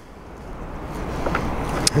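Low rumble of the idling 5.3 V8 of a remote-started Chevrolet Tahoe, heard from the rear of the truck and growing steadily louder, with one sharp click near the end.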